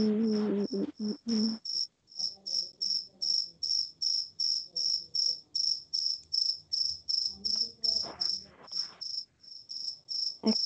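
An insect chirping steadily near the microphone: a short, high-pitched chirp repeated evenly about four times a second.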